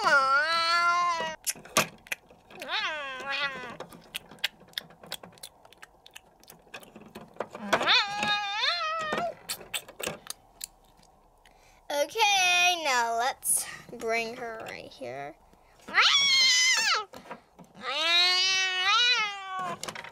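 A person voicing a toy cat, meowing about six times, each a drawn-out call of about a second that slides up and down in pitch. Light clicks of small plastic toys being handled come between the first calls.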